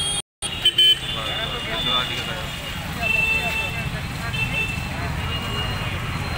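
Indistinct voices of a group of people talking over steady street traffic noise, with a brief gap in the sound just after the start.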